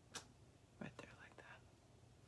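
Near silence, with a faint whispered murmur a little under a second in and a couple of small, short clicks.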